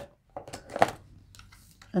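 Brief desk handling noises from paper cash envelopes: a few soft rustles and one sharp click or tap a little under a second in. A woman starts speaking right at the end.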